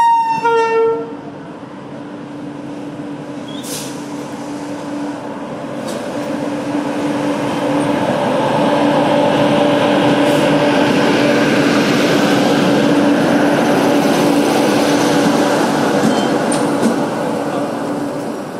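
An Indian Railways WAP7 electric locomotive's horn, which cuts off about a second in, then the locomotive and its coaches running past close by as the train arrives: a steady hum under a rumble that builds over the first eight seconds and stays loud.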